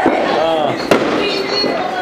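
Firecrackers popping twice, about a second apart, under people's voices.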